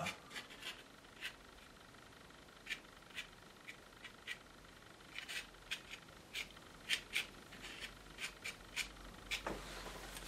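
Painting knife scraping wet oil paint off a textured painting to cut light lines into it, in short, sharp scratchy strokes that come irregularly, with a pause of about a second early on.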